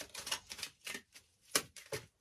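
A tarot deck being shuffled and handled: a quick, irregular run of card clicks and flicks, the sharpest about one and a half seconds in.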